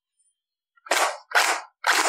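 Airsoft rifle firing three short bursts in quick succession, about half a second apart, starting about a second in.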